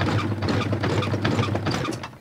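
Animatronic electric-chair Halloween prop in action: a loud, harsh electrical buzz over a low hum while the strapped-in dummy shakes, cutting off suddenly at the end.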